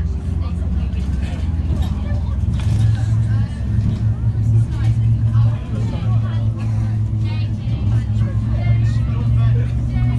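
A school bus's diesel engine running as the bus drives along, its low hum getting louder about two and a half seconds in and holding there. Indistinct passenger voices chatter over it.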